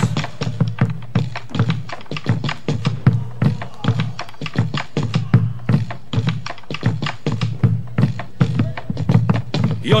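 Instrumental opening of a Santiago-style chacarera: a bombo legüero drum beats a driving, steady rhythm of dense percussive strikes, with deep thumps under sharper clicks. A voice starts singing at the very end.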